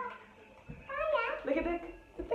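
A child's voice speaking briefly, starting a little under a second in after a short quiet moment. The words are not made out.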